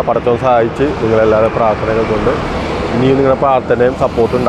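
A man speaking continuously.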